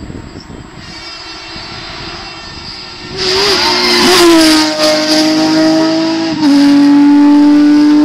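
Porsche 911 GT3 rally car's flat-six engine approaching and going past at speed, very loud from about three seconds in. Its note wobbles as the car goes by, then holds steady, with a small drop in pitch and a jump in level about six and a half seconds in.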